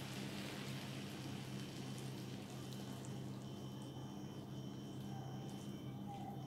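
Faint, steady sizzling and crackling of freshly baked baklava as lukewarm syrup is poured over the hot pastry, over a low steady hum.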